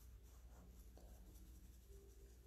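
Near silence, with the faint brushing of a soft makeup brush sweeping highlighter powder across the skin of the face.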